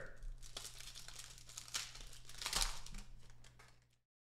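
Foil wrapper of a trading-card pack being torn open and crinkled by hand, a faint rustle that swells in two louder bursts in the second half before fading out.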